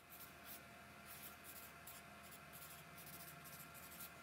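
Felt-tip marker writing on a yellow legal pad: a faint, quick run of short pen strokes, several a second.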